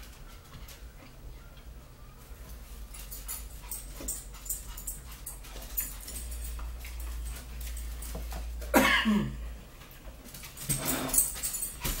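A dog whimpering, with one loud whine that falls steeply in pitch about nine seconds in and more short cries near the end.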